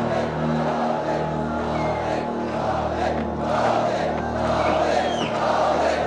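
Film score music with steady low held notes under a large crowd shouting and cheering, the crowd swelling about halfway through.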